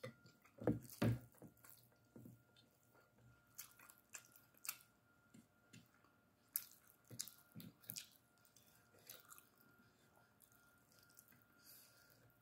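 Faint, close-up eating sounds: wet mouth smacks and clicks of chewing rice, with soft squishes of fingers mixing rice on a plate. The loudest smacks come in a pair about a second in, with more scattered through.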